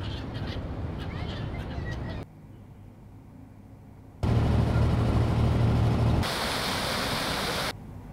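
Ambient recordings cut together in hard edits: gulls calling over background noise for about two seconds, then a quieter stretch of room-like noise, then a loud low rumble of traffic for about two seconds, then a steady hiss that cuts off just before the end.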